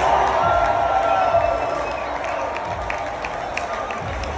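A large stadium crowd cheering and applauding, loudest in the first two seconds and then easing off, with scattered sharp claps standing out. The sound echoes under the roof of an indoor dome.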